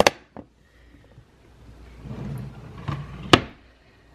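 Small items knocking against each other in a sewing cabinet drawer with a sharp click at the start. Then comes a sliding rustle and a sharp knock about three seconds in, as the drawer is pushed shut.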